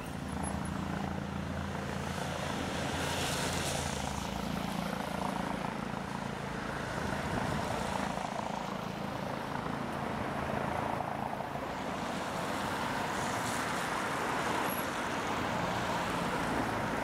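Police helicopter, a Eurocopter EC135 with a shrouded tail rotor, circling overhead: a steady drone of rotor and turbine, with a low hum that is strongest in the first few seconds.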